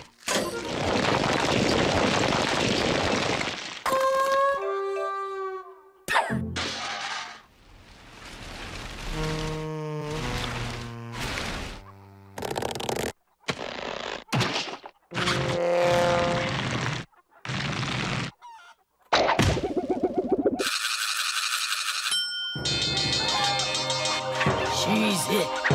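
Cartoon music and comic sound effects. Just after the start, a rushing pour of about four seconds: gravel tumbling through a feeding funnel. It is followed by quick jingles, clicks and pitched effects, with a steady high tone near the end.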